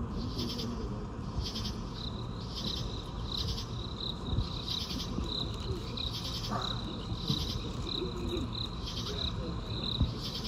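A high-pitched insect chirping: a steady trill that pulses about twice a second, with a fuller chirp about once a second. A low crowd murmur runs underneath.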